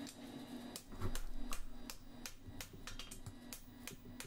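A run of light, irregular metallic clicks and taps, with a heavier knock about a second in: a steel horseshoe held in tongs being handled and turned over on the anvil.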